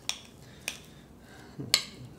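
A metal utensil clinking and scraping against a small glass bowl while mashing a stiff brie cheese filling: a few sharp clicks, the loudest near the end.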